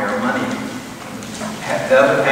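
Speech only: a man talking, with a short lull in the middle.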